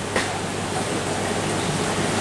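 Steady rushing hiss of running water and filtration in aquarium display tanks, with a low hum underneath.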